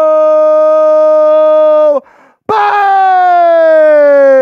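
A man's voice belting long, wordless held notes: one steady note for about two seconds, then after a short break a second loud note that slowly slides down in pitch.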